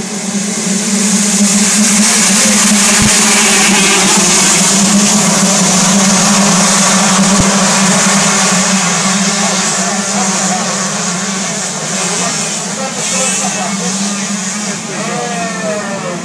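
A full pack of motocross bikes accelerating off the start line together, their engines blending into one loud continuous revving. It swells over the first two seconds and fades gradually after about ten seconds as the field pulls away.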